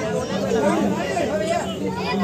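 Several people's voices chattering at once, overlapping and indistinct.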